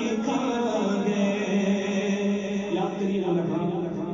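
A single voice chanting a devotional Urdu song, holding long drawn-out notes.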